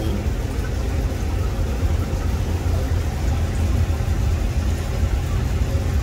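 Steady low hum and rumble of a cooler running.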